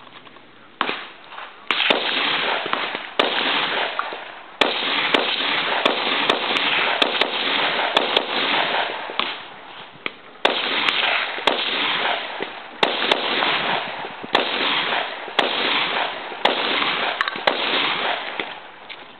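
Gunshots from a string of fast fire, often about two shots a second, each followed by a long echo. There is a brief lull about nine seconds in before the firing picks up again.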